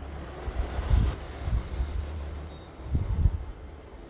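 Low rumbling sound effect with a few deep booms, the loudest about a second in and again about three seconds in, with a hiss in the first second; it fades out near the end.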